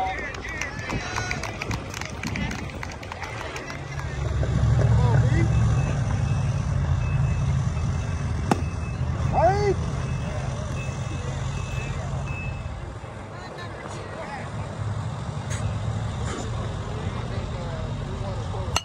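Low rumble of a heavy vehicle, swelling about four seconds in and easing off after about thirteen seconds, with a few sharp knocks and short distant shouts over it.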